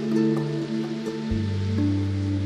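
Background music: slow, soft held chords, the low note changing about a second and a half in.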